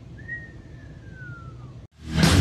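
A single high whistled note that rises slightly and then glides slowly downward for about a second and a half, over low background noise. The sound cuts off abruptly into silence just before the end.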